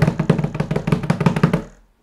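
A rapid drum roll of many quick strikes, loud and fading out near the end.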